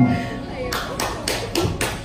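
A steady beat of sharp claps, about four a second, starting under a second in, with music faintly beneath.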